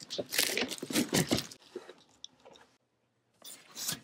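Cardboard shipping box being opened by hand: crackling, rustling rips of cardboard and tape for the first second and a half, then quiet, and another short rustle near the end.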